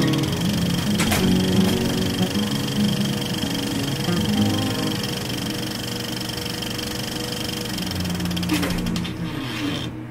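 Intro music with the steady, fast rattle of a film projector sound effect under it, fading down near the end.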